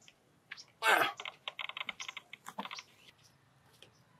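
A man's short cry about a second in, followed by a fast run of short, clipped vocal sounds lasting about a second and a half.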